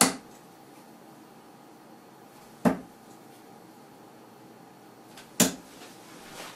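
Three darts striking a bristle dartboard one after another, each a short sharp thud, about two and a half seconds apart.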